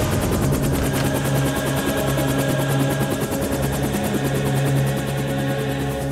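Light helicopter's rotor and turbine running on the ground, with a rapid, even rotor beat, under a dramatic film score.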